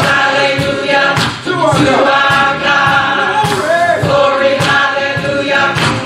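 Church choir singing a gospel song with a steady beat underneath.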